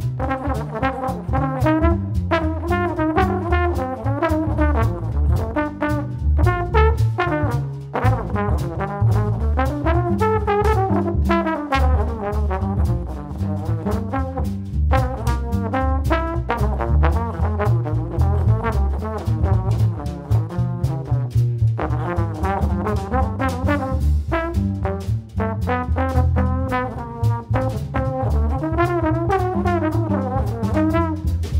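Jazz trombone solo in phrases, accompanied by upright bass and a drum kit with cymbals ticking steadily.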